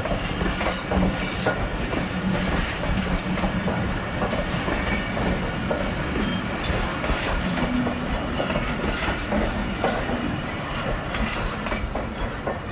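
Pakistan Railways passenger coaches rolling past, a steady rumble of wheels on rails with irregular clicks as the wheels run over the rail joints.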